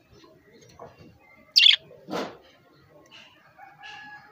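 Budgerigar giving one loud, sharp chirp about a second and a half in, followed at once by a shorter, rougher burst, with faint chirping around it.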